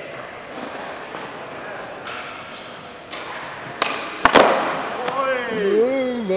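A skateboard strikes a concrete floor sharply two or three times in quick succession about two-thirds of the way in, over background chatter in a large hall. A voice then calls out in a drawn-out shout.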